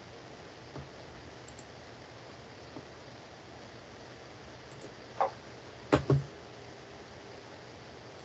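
Computer mouse clicks over faint room hiss: a couple of faint clicks, a sharper click about five seconds in, then two quick clicks close together about a second later.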